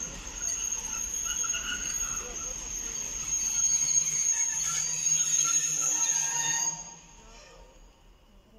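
Freight train of open coal wagons rolling slowly, with a steady high-pitched squeal from the wheels over a low rumble. The sound drops away sharply about seven seconds in.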